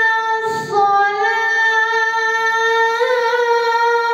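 A boy's voice chanting the azan, the Islamic call to prayer, drawing out a long melismatic note. He takes a quick breath about half a second in, then carries on a little lower, with a small lift in pitch near the end.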